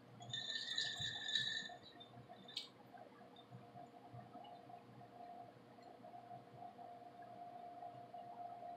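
Plastic drinking straw squeaking against the ice and glass as it is moved around in a glass of iced lemonade, for about a second and a half near the start, then one light click. The rest is quiet apart from a faint steady hum.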